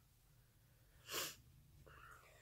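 Near silence, broken about a second in by one short, sharp breath from the person.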